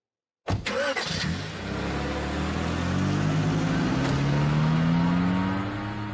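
Car engine starting suddenly about half a second in, then revving, its pitch climbing steadily for several seconds before falling away near the end.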